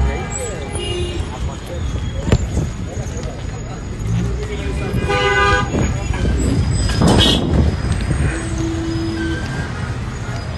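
Busy city street with car horns honking, one held horn about five seconds in and a shorter one near nine seconds, over traffic noise and voices.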